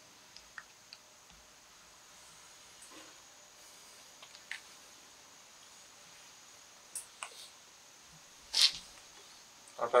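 Quiet room tone with a faint steady high-pitched hum, a few light clicks, and one short hissing noise about a second and a half before the end.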